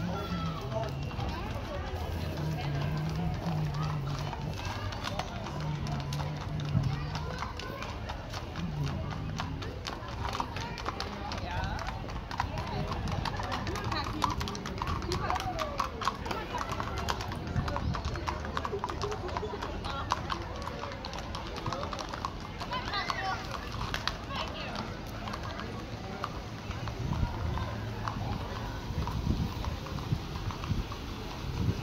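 Horses' shod hooves clip-clopping on an asphalt street as mounted riders pass, with people talking around them.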